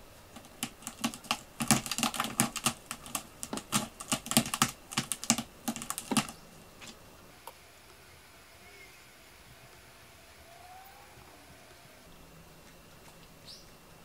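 A quick, irregular run of sharp clicks and taps lasting about six seconds, then quiet.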